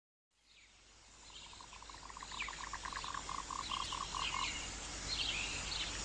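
A nature soundscape fades in from silence about a second in. A frog-like croak repeats about four times a second and stops near the end, with short bird chirps above it.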